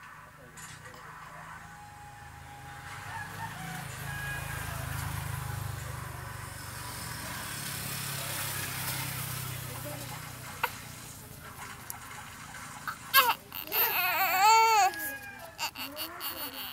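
A newborn baby waking and starting to cry. A soft steady low rumble fills the middle stretch, then about thirteen seconds in come a few short sharp cries that rise into a loud wavering wail, followed by shorter cries near the end.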